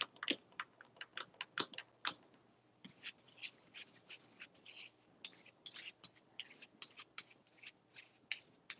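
Faint paintbrush strokes on canvas: short, irregular scratchy swishes a few times a second as the brush works paint back and forth in crisscross strokes.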